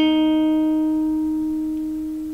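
A single note picked on an electric guitar capoed at the sixth fret: the second fret from the capo on the third string. It rings out and slowly fades.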